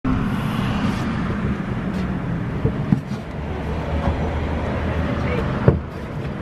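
Street traffic: a motor vehicle engine running steadily on the road, with two short knocks, one about halfway and one near the end.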